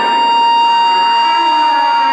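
Live band music dominated by one steady, high held note, with quieter lower notes shifting beneath it.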